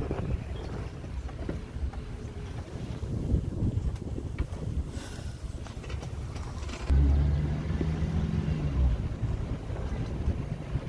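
Low engine and road rumble from inside a slowly moving car. A louder, steady low drone comes in at about seven seconds and lasts around two seconds.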